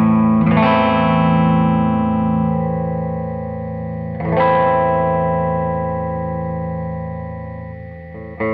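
Humbucker-loaded electric guitar played through the Dogmatek Arctic Wolf Twin Modulator Phaser pedal: a chord is struck about half a second in and another about four seconds in, each left to ring out and fade under the phaser's modulation.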